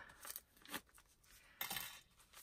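Faint paper handling as a handmade journal signature is picked up and turned in the hands: a few soft short rustles, with a slightly longer one near the end.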